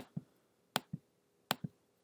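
Computer mouse clicked three times, about three quarters of a second apart, each a sharp press click followed by a softer release click.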